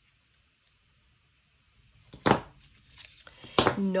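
Small metal jewellery pliers knocking against a tabletop as they are put down: a quiet stretch, then a sharp clack about halfway through and a second knock near the end.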